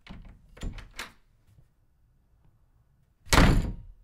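A door being worked: a few short latch and handle clicks in the first second, then the door shutting with a loud thud about three seconds in.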